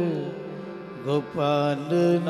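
Sikh kirtan music: harmonium and singing. A held note fades away over the first second, then a new phrase begins about a second in, with sliding sung notes settling onto a held tone over the harmonium.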